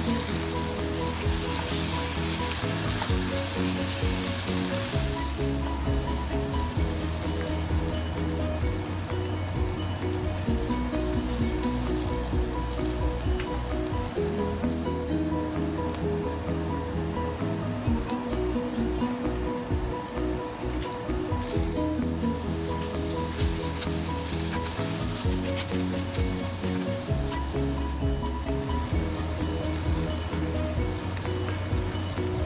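Dried shrimp and garlic chili paste frying in oil in a nonstick pan, sizzling as a wooden spatula stirs in chopped tomato, louder for the first few seconds. Background music with changing notes plays throughout.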